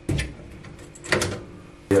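Metal mesh grease filter being unclipped and slid out of a kitchen extractor hood: a metal clack and scrape at the start, and another a little over a second in.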